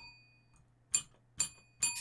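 A small service bell dinged three times, about half a second apart, each a short bright ring.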